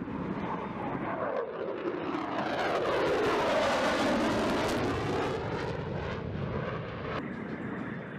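F-22 Raptor fighter jet flying past, its engine noise a steady rushing sound whose tone sweeps down and back up as it passes. It is loudest midway and drops off a little shortly before the end.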